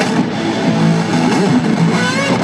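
Live rock band playing an instrumental passage led by electric guitar, with the guitar bending notes over a steady backing, heard from within an arena crowd.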